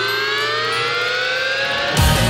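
A siren-like tone with many overtones, rising steadily in pitch: a build-up effect in a roller coaster's ride soundtrack at the launch.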